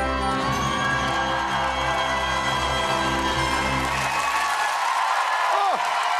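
Show music for an ice-dance routine, playing loudly over audience cheering; the bass drops out about five seconds in.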